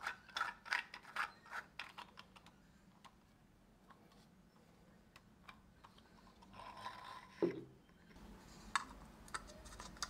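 3D-printed plastic spinning top parts being twisted by hand: a quick run of faint clicks for the first two seconds or so, then a few soft plastic handling sounds later on.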